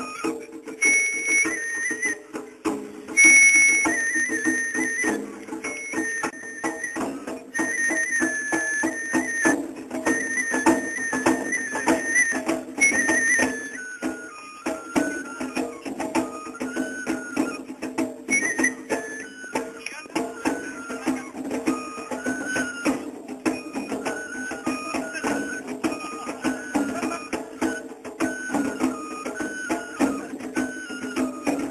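Japanese festival music (matsuri-bayashi): a shinobue bamboo transverse flute plays a high melody over steady drumming. About halfway through, the flute moves to a lower phrase.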